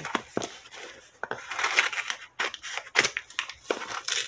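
Scissors cutting through tough tape on a cardboard parcel: several sharp snips, with rustling and scraping of tape and cardboard in between.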